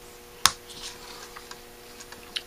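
A single sharp click about half a second in, then faint small clicks, as a screwdriver works on the main jet in the body of a Holley 1904 one-barrel carburetor.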